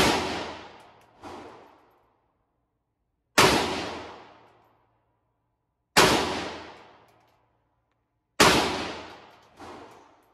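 Century Arms AK-47 rifle fired semi-automatically, four single shots about two and a half seconds apart, each report ringing out with a long echo in the indoor range lane. A fainter bang follows about a second after the first shot and again near the end.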